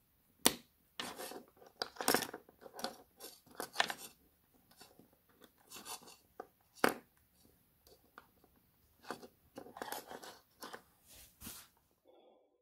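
Small plastic push-in wire connector handled as wires are fitted into it: sharp clicks about half a second in and again near seven seconds, with rustling and scraping of wire and plastic in between.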